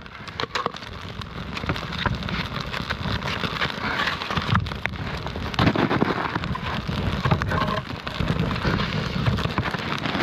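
Wood campfire crackling and hissing as snow-damp split logs steam on it, with dense small pops and an occasional knock of a log being set onto the fire.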